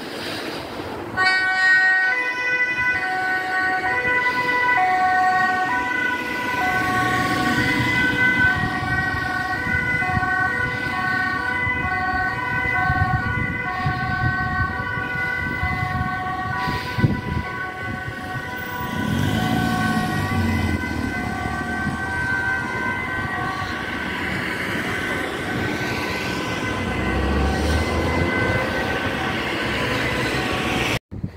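Two-tone emergency vehicle siren alternating steadily between a high and a low note, starting about a second in. A low rumble of a vehicle passing comes in around twenty seconds in and again near the end.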